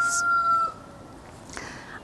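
A rooster crowing in the background, its held final note fading out within the first second.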